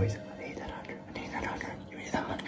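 Quiet whispering voice in a small room.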